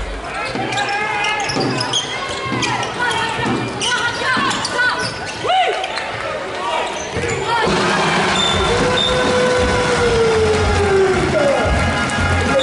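Handball game play in an indoor hall: the ball bouncing on the court, shoes squeaking on the floor, and players' and spectators' voices. The crowd noise grows fuller about two thirds of the way in as play breaks toward the other end.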